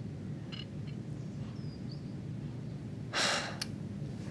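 Quiet room tone, then a single audible breath, a sigh or sharp intake of air, a little after three seconds in.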